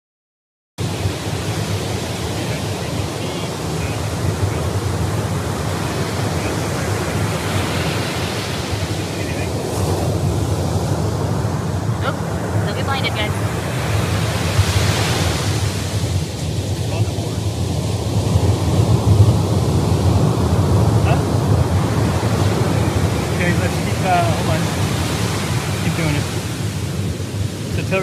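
Wind and breaking surf on an open ocean beach, heard as a loud, steady rushing noise heavy in the low end, with wind buffeting the microphone. It starts suddenly just under a second in, and faint snatches of a distant voice come through now and then.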